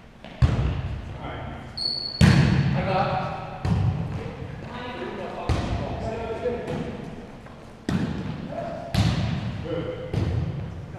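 Volleyball being struck during a rally in a large echoing gym: about six sharp smacks, each ringing on in the hall's reverberation, the loudest near the start and about two seconds in. Players' voices call out between the hits.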